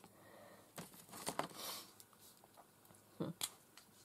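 Soft rustling with a few light clicks, then a louder tap, as hands handle paper and craft tools on a table.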